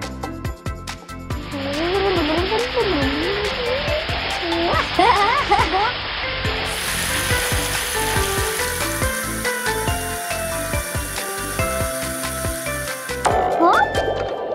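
Shower water spraying, a steady hiss that comes in about a second and a half in, grows brighter about halfway through and cuts off suddenly near the end, over cheerful background music.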